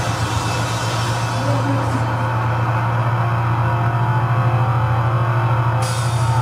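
Sludge/doom band playing live noise: a loud, sustained low drone of heavily distorted bass and guitar. A high hiss over it drops away about two seconds in and comes back near the end.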